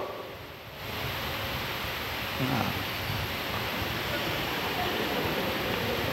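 A steady, even rushing noise that swells in about a second in and then holds.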